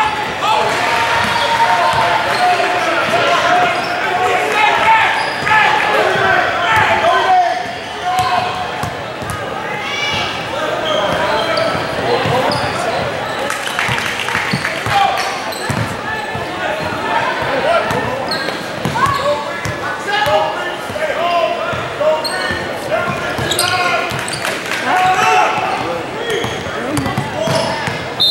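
Gym sound of a basketball game: people talking and calling out throughout, with a basketball bouncing on a hardwood floor now and then, all echoing in a large hall.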